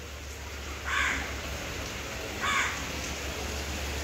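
Two short, harsh animal calls, one about a second in and one about two and a half seconds in, over a steady hiss of rain.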